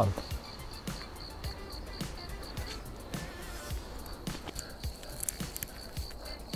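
An insect, cricket-like, chirping in a fast high pulsed series of about four pulses a second, which pauses briefly past the middle and then resumes. Under it are irregular footsteps and rustles on the forest floor.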